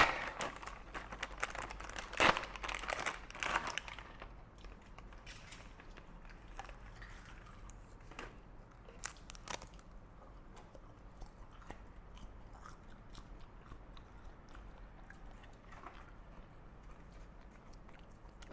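A plastic snack packet crinkling and tearing open for the first few seconds, then faint crunching and chewing of crispy seaweed sheets.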